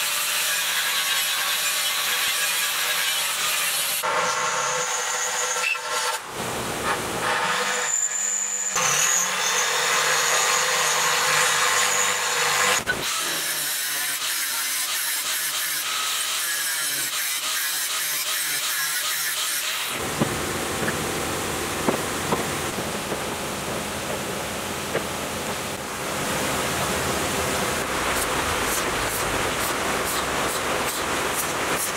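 Electric angle grinder grinding and cutting steel, the canister's shell and then steel pipe, as a steady hissing whine that breaks off and restarts several times.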